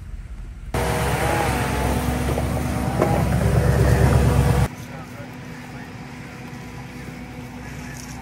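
A compact track loader's diesel engine running loud, coming in suddenly about a second in and rising further around three seconds. It cuts off abruptly before five seconds, leaving a much quieter background.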